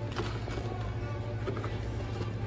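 Restaurant dining-room background: a steady low hum with faint music.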